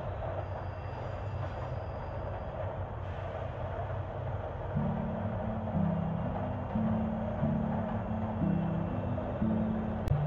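Steady rumble and hiss of a Montreal metro train running, with a faint high tone in the first couple of seconds. From about five seconds in, low held music notes join it, changing about once a second.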